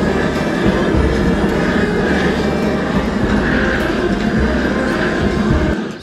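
Handheld propane gas torch burning with a loud, steady rush of flame as it is held to a heap of charcoal briquettes to light them; the sound stops just before the end.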